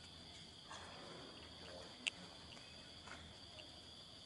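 Faint, steady high-pitched insect chorus, with one short sharp chirp about halfway through.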